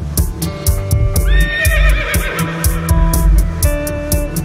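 A horse's whinny, a recording played into live music, rings out about a second in: a sharp rise, then a wavering, falling call lasting about a second and a half. Underneath runs a steady quick beat with sustained guitar and electronic tones.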